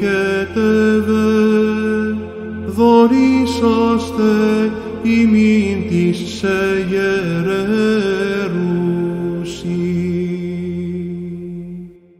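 Byzantine chant sung by a man's voice in a long, wordless-sounding melismatic phrase over a steady held drone note (the ison). The phrase closes the hymn and fades out near the end.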